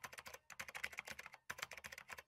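Keyboard typing sound effect: rapid key clicks in three quick runs with short pauses between them, as on-screen text is typed out.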